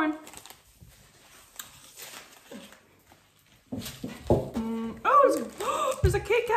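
A person's wordless voice, humming or sing-song notes, some held on one pitch and some sliding, starting about two thirds of the way in after a quiet stretch with faint rustling.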